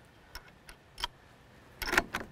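Metallic clicks from handling a rifle's action as a round is loaded: a few light ticks, a sharper click about a second in, then a louder quick cluster of clicks near the end.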